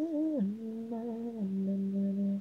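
Unaccompanied male lead vocal, with no instruments, holding a sung note. A short, slightly wavering higher note in the first half second steps down to a long, steady lower note.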